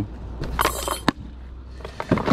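Objects being handled while unpacking: a short scraping rustle about half a second in, ending in a single sharp knock just after a second, over a low steady rumble.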